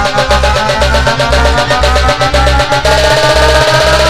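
Instrumental passage of a bregadeira (Brazilian arrochadeira-style) song: a fast electronic drum beat over a pulsing bass, with melody lines on top and no vocals. A held high note comes in about three seconds in.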